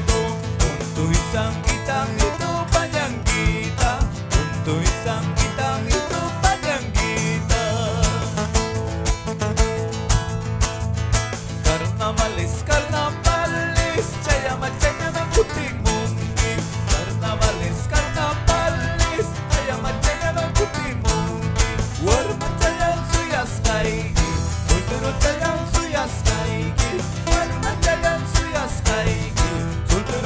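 Live Andean carnaval music: nylon-string acoustic guitars strummed in a steady, even rhythm, with a man singing over them.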